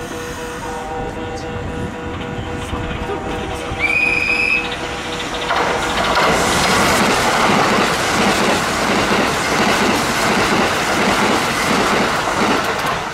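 Kintetsu 21000-series Urban Liner limited express passing through the station at speed, its wheels clattering over the rail joints in a loud rush that builds from about five seconds in. Before it arrives there is a short, high horn note at about four seconds over a steady low electrical hum.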